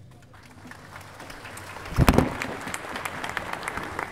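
Audience applause, building up from the start and carrying on steadily, with one loud low thump about two seconds in.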